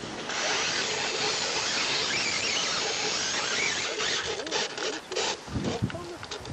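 Electric motor and gear train of a Losi RC rock crawler whining steadily as it crawls up rocks, with scattered clicks and knocks in the last two seconds.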